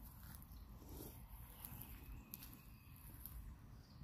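Near silence: faint background noise between remarks.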